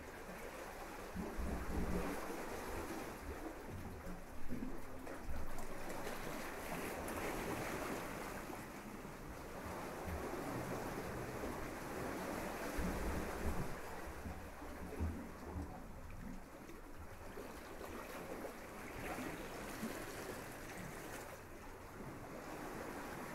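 Steady rushing noise of water and wind, with irregular low rumbles.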